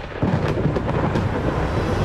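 A deep, noisy, thunder-like rumble starts suddenly a moment in and carries on steadily.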